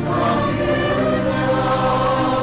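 A virtual choir of student voices singing a prayer song in held, sustained chords.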